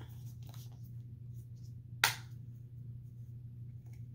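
A plastic lotion bottle being handled: faint small clicks and rustles, then a single sharp click about halfway through.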